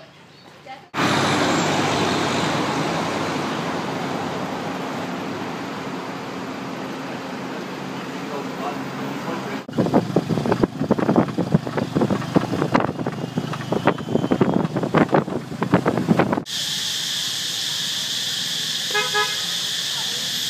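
Steady roar of street traffic, then the rattling and knocking of a ride in an open-sided vehicle, then a steady high-pitched insect drone with a few short beeps near the end.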